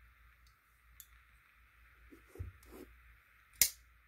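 Faint handling clicks, then one sharp metallic snap about three and a half seconds in: the Protech TR3 automatic knife's coated S35VN blade firing open on its button release.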